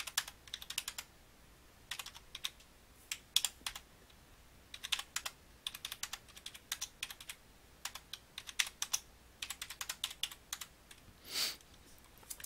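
Computer keyboard typing: short clusters of keystrokes with pauses between them, as two-digit numbers are keyed in one after another. There is a short noisy burst near the end.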